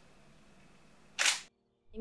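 Faint room tone, then about a second in a single sharp SLR camera shutter release, followed by a moment of dead silence.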